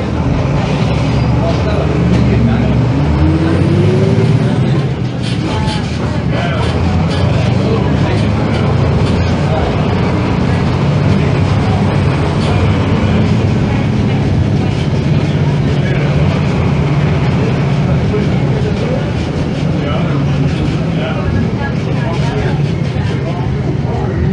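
Tatsa Puma D12F city bus with a front-mounted six-cylinder diesel engine and a manual gearbox. The engine pulls up in pitch for about three seconds, drops off about four and a half seconds in as at a gear change, then runs on steadily under way.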